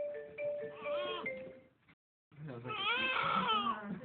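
Newborn baby crying: one short wail about a second in, then, after a brief dropout, a longer and louder cry. A simple tune of two alternating notes plays behind it during the first half.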